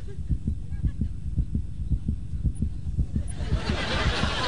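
A fast, steady heartbeat sound effect, low thuds in a regular rhythm, standing for a child's panic as she freezes under stage fright. Near the end, whispering voices rise over it.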